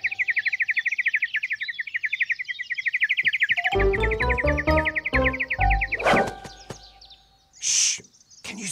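Cartoon bird chirping in a fast, steady trill of high notes that stops about six seconds in. Bouncy music comes in under it about halfway through, and there is a short hiss near the end.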